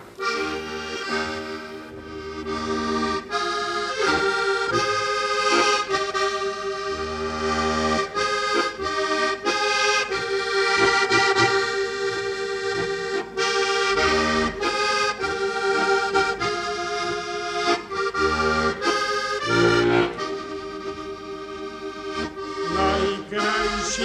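Heligonka, a Slovak diatonic button accordion, played solo as the instrumental introduction to a Slovak folk song: a melody in held chords over short bass notes every couple of seconds.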